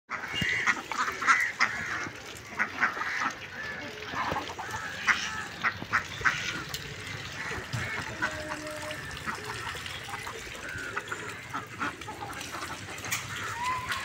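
Domestic ducks quacking in short, repeated calls, thickest in the first half and sparser later.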